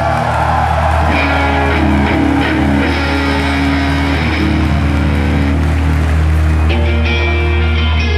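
Live post-hardcore band playing an instrumental passage: electric guitars over a sustained low bass note. The music grows fuller and brighter about seven seconds in.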